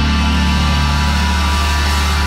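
A loud, low, steady drone from the band's downtuned guitars and bass, a chord left ringing through the amplifiers with no drums or vocals over it.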